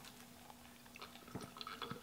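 Faint close-up mouth sounds of chewing fried food, with a few soft clicks and smacks in the second half.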